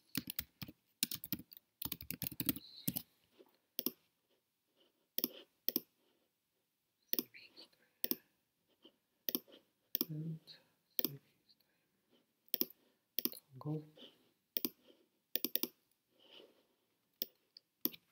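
Computer keyboard typing and mouse clicks: scattered single clicks and short runs of key presses, separated by pauses.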